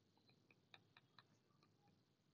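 Near silence with several faint, short clicks, two of them a little louder: a stylus tapping on a tablet screen while handwriting.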